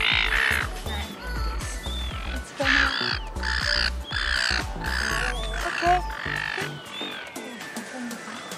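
Gulls calling over background music: a run of harsh, rapid calls about half a second apart, easing off after about six seconds.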